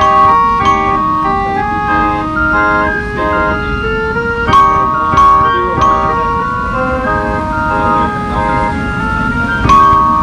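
Air-blown pipe organ playing a tune in steady held notes, with a few sharp percussion strikes about halfway through and again near the end.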